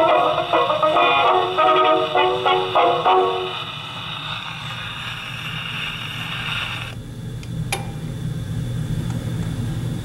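Electrola 101 portable wind-up gramophone playing the last bars of a 78 rpm record through a loud-tone steel needle; the music ends about three and a half seconds in and only the needle's surface hiss remains. The hiss cuts off suddenly around seven seconds in, with a single click shortly after.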